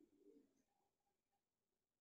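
Near silence: faint room tone, with three very faint short sounds close together about a second in.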